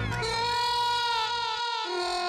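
Comedy sound-effect music: one long held note, rich in overtones, sagging slightly in pitch as it goes, laid over a reaction shot.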